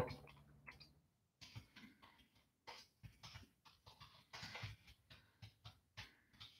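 Near silence with faint, irregular taps of a computer keyboard being typed on.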